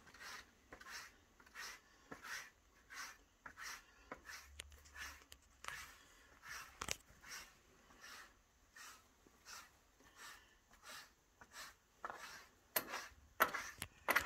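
A tined hand tool scratched back and forth on a cow's neck: faint, even rasping strokes, a little under two a second, with a few louder strokes near the end.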